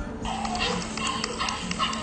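A dog barking and yipping in a quick run of high calls, starting a moment in, over background music.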